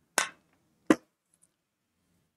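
Two sharp knocks about 0.7 seconds apart, the second one louder and shorter.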